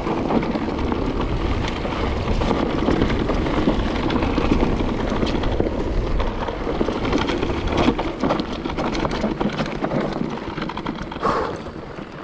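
Electric mountain bike descending a dirt forest trail: wind buffeting the camera microphone over the tyres rolling on dirt, with a dense patter of small knocks and rattles from stones, roots and the bike. The noise eases as the bike slows near the end.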